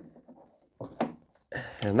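Faint handling noises, then a single sharp click about a second in as a heavy power cable's plug is pushed home in an EcoFlow Delta Pro power station's socket.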